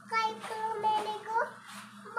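A young child singing a rhyme in a high voice, drawing out the notes.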